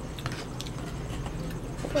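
A pause in speech: a steady low hum of room noise with a few faint clicks about a quarter of a second in, then a girl's voice starting again near the end.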